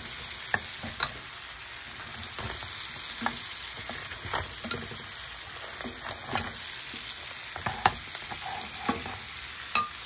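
Crab legs and garlic sizzling steadily in a hot skillet while a wooden spoon stirs them, with short knocks of the spoon against the pan now and then.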